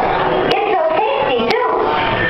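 A high, pitch-bending voice over steady room and crowd noise, with two sharp clicks about a second apart.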